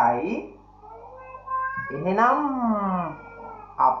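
A cat meowing: one long drawn-out meow that rises and then falls in pitch, about two seconds in.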